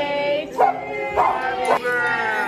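Voices singing in held notes, broken by loud, rough chimpanzee calls about half a second in and again from just past a second in.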